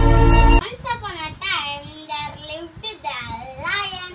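Instrumental title music cuts off abruptly about half a second in, followed by a young boy's voice singing in a sing-song way, the pitch swooping up and down.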